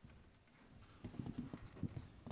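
Faint, irregular soft knocks and taps, starting about a second in after a near-silent first second.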